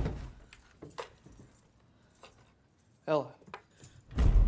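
A few faint, scattered light clicks and rattles of small hard objects being handled, like keys, then a voice calls out a name near the end.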